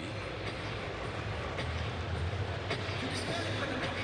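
Basketball arena crowd noise: a steady, dense din of many voices with a low rumble underneath.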